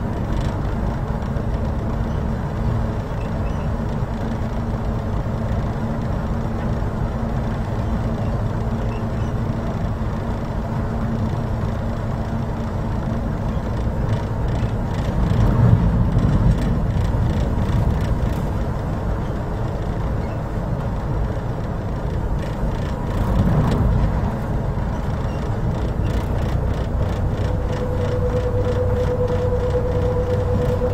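Passenger ferry's engines running steadily, a low rumble heard inside the passenger cabin, swelling briefly about halfway through and again later. A steady tone comes in near the end.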